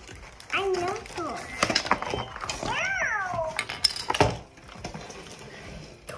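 Electronic meow from a FurReal Walkalots unicorn cat toy: one call that rises and then falls in pitch about halfway through. A few sharp clicks and knocks come before and after it.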